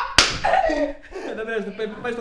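A single sharp hand clap, followed by a man's laughing voice.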